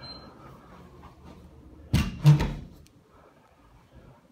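Closet door being shut: two loud knocks a third of a second apart, about halfway through.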